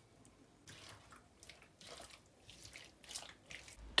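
Faint, irregular scraping and wet stirring of a silicone spatula working thick béchamel sauce into cooked chicken and mushrooms in a non-stick frying pan, in short strokes.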